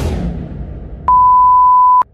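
Editing sound effects: a swelling noise with a low rumble, then about a second in a loud, steady single-pitched beep tone that cuts off abruptly.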